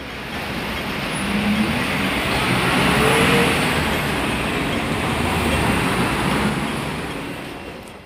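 Heavy road traffic passing close by on a city street: a loud rushing vehicle noise that builds over the first few seconds and fades away near the end, with an engine tone rising in pitch about two seconds in.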